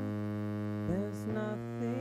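Music: a sustained low synthesizer drone with held chord tones, and a few short sliding notes about a second in.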